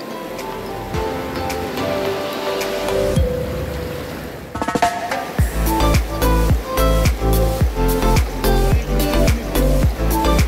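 Background music: a melodic passage of held notes, then a build and a steady drum beat that kicks in about five seconds in, with about two beats a second.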